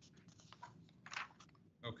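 Faint scattered clicks and rustles of handling noise over an open video-call microphone, with a short louder cluster about a second in; a man says "okay" right at the end.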